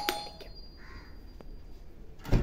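A wall switch clicked, with a thin ringing tone after the click that fades over nearly two seconds. A faint bird call comes about a second in.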